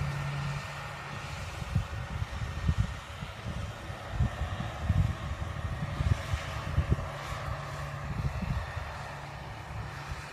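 Distant John Deere 7530 tractor's diesel engine running steadily as it drives a Teagle topper cutting marsh growth. Irregular low thumps sound on the microphone throughout.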